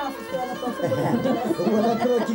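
Several voices talking over one another at once, getting louder about a second in.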